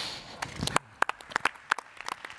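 Scattered applause from a few people: separate sharp hand claps, irregular and not very dense, starting about half a second in.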